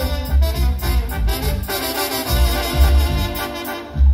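Live Mexican banda music: a section of trumpets and trombones plays an instrumental passage over a drum kit and a pulsing low bass beat, with no singing.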